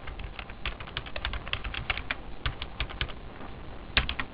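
Computer keyboard being typed on, a quick irregular run of light key clicks as a short word is entered.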